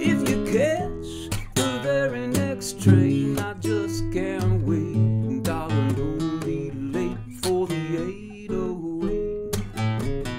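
Classical nylon-string guitar played with the fingers: an instrumental passage of plucked chords and bass notes between sung lines.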